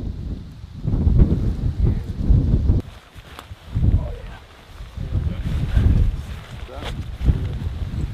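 Wind buffeting the microphone in gusts, a low rumble that swells and drops away several times, with faint muffled voices under it.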